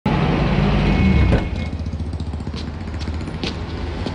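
A motor vehicle's engine running as a low, steady rumble, loudest in the first second and a half and then settling lower, with a few light clicks.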